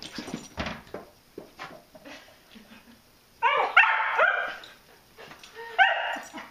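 A dog barking: a quick burst of three or four short barks about halfway through, after a few light knocks near the start.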